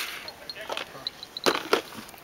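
Two short, sharp knocks about a second and a half in, as small objects are handled and set down on a table, over faint outdoor background.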